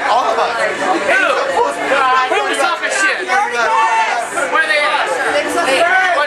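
Several people talking and laughing over one another at close range: loud, continuous overlapping chatter with no single clear voice.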